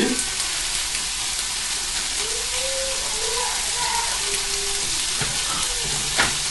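Dandelion leaves sizzling steadily in a frying pan in the hot fat of freshly fried lardons.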